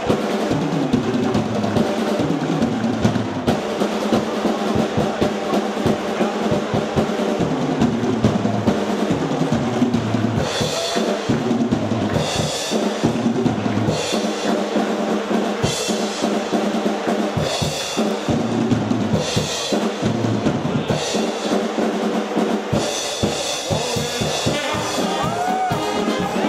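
Drum solo played on several drum kits and a marching snare drum: dense, fast rolls and fills. From about ten seconds in, cymbal crashes are struck again and again.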